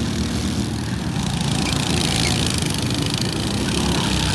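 Small go-kart engines running as karts lap a corner of the track. The sound gets brighter and a little louder from about a second in.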